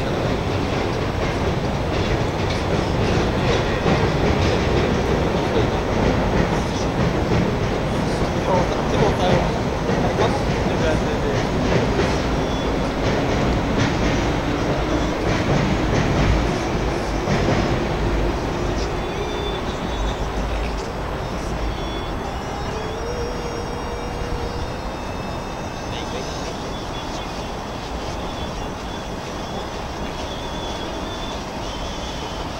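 A train running past with a steady rumbling noise and a faint whine that rises slowly in pitch through the middle; the noise eases off over the last several seconds.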